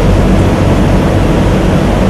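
A steady, loud hiss with a low hum beneath it, unchanging throughout: the noise bed of the recording, with no other event standing out.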